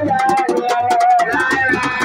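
A voice singing a Sufi zikr chant (thiant) in long held, wavering notes over a quick steady percussion beat.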